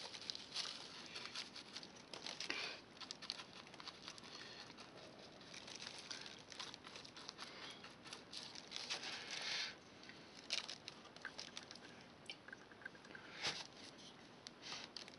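Paintbrush dabbing and scrubbing wet white glue onto a rough scenery base: a faint, irregular run of soft scratchy strokes with a few small clicks, and an occasional crinkle of plastic sheeting.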